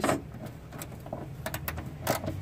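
Socket ratchet clicking in short, uneven runs while backing out a 10 mm screw from a plastic wheel-well liner, over a low steady hum.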